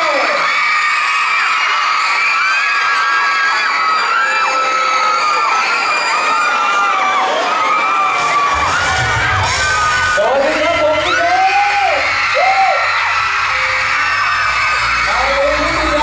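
A crowd of school students screaming and shrieking, with many high-pitched cries overlapping. About halfway through, a song's backing track starts over the PA with a steady bass beat beneath the screams.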